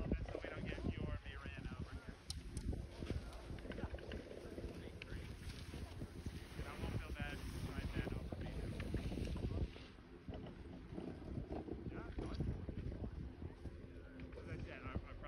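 Wind buffeting a phone microphone on a ski slope, an uneven low rumble that rises and falls. Faint voices come through briefly near the start and again about halfway.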